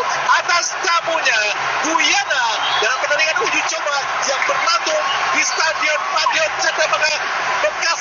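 Television football commentary: a man's voice talking continuously over a steady stadium crowd din.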